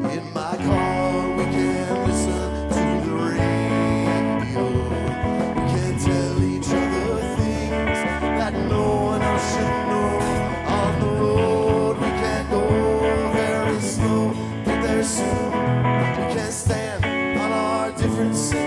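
Live band playing an instrumental passage of a bluesy rock song: electric guitar, electric bass and drum kit with cymbals.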